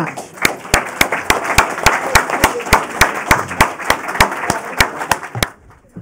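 Audience applauding, with one clapper close to the microphone standing out as sharp, even claps about three or four a second. The applause stops about half a second before the end.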